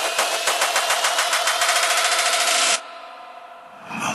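Frenchcore/hardcore mix in a kickless build-up: a rapid rattling roll of hits under a slowly rising tone. It cuts off suddenly about three-quarters of the way in, leaving a much quieter pause.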